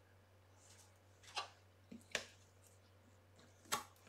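Double-sided tape and paper being handled and pressed down on a table: a few short, soft crackles and taps, about a second and a half in, twice just after two seconds, and again near the end.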